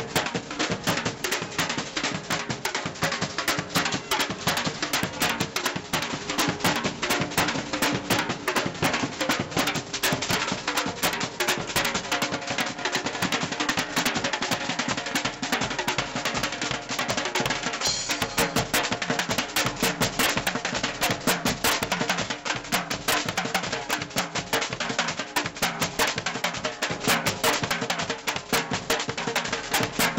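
Street drum band playing large bass drums and other percussion in a dense, driving rhythm, strokes coming many times a second without a break.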